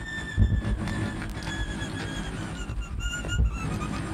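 Violin playing high, thin notes that slide slowly downward in pitch, over a low rumbling noise track.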